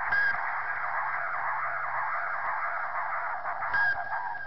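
Radio-transmission sound effect: a steady, narrow, telephone-like band of static hiss, with a short electronic beep just after the start and another near the end.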